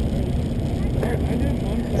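Car engine idling in a steady low rumble.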